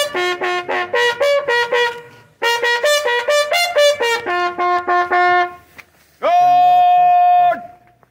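Bugle sounding a salute call while the salute is given: quick runs of short notes, then one long held note about six seconds in.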